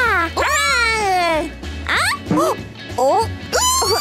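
High-pitched cartoon character voices making wordless exclamations that slide steeply down and up in pitch, over background music with low bass notes.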